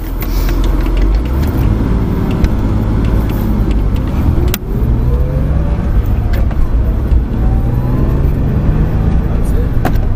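Car engine heard from inside the cabin, driving along at moderate speed; its note rises, dips briefly about four and a half seconds in, then rises again.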